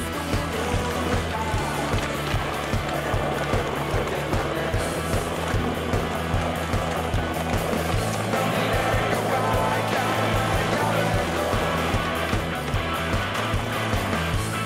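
Rock music with a steady beat and a sustained bass line that moves to a new note about eight seconds in.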